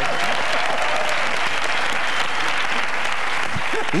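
Studio audience applauding steadily, with a few voices mixed in.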